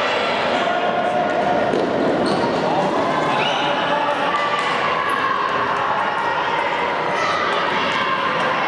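Futsal ball kicks and sneaker squeaks on a wooden indoor court, under steady shouting and voices from players and spectators echoing in a large sports hall.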